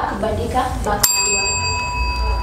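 A desk service bell struck once about a second in, then ringing on with a clear, steady ring: a contestant hitting the bell to buzz in and answer first.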